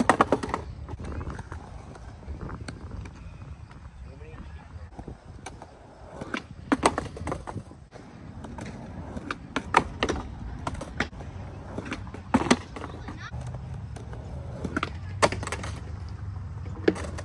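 Skateboard wheels rolling on concrete with a low rumble, broken by several sharp clacks of the board slapping and hitting the ground during flip-trick attempts off a concrete stair set.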